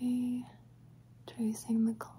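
Only speech: a woman's soft voice, one held syllable at the start and two short syllables about a second and a half in.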